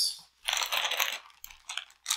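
Clear plastic packaging crinkling as it is handled on a table, for about a second, followed by a few light clicks.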